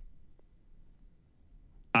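Near silence: a pause between two speakers, with only faint low room hum. Speech starts again just before the end.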